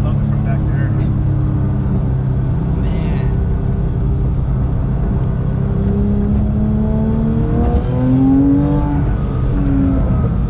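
Porsche 911 GT3 (997.2) 3.8-litre flat-six engine heard from inside the cabin while driving. The engine holds a steady note, then rises in pitch as the car accelerates from about six seconds in. After a short break near eight seconds it holds a louder, higher note.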